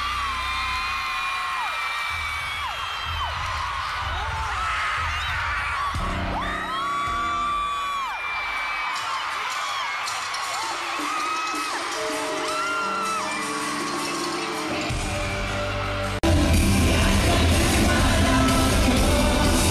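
A packed arena crowd screaming and whooping over a live pop-rock band, with many shrill voices rising and falling above the music. About sixteen seconds in, it cuts suddenly to a louder full-band passage.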